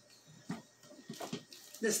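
A few light knocks and rustles of a large plastic Tupperware Thatsa Mega bowl being lifted down from a high shelf. A woman starts speaking near the end.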